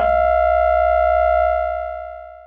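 A held electronic tone: one steady synthesized note with overtones and a low hum beneath it, starting abruptly and beginning to fade out near the end.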